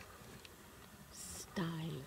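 Quiet voices: a faint background with a few soft ticks, then a whisper about a second in, and near the end a person starts speaking softly.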